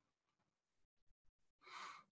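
Near silence, with a faint in-breath near the end just before speech resumes.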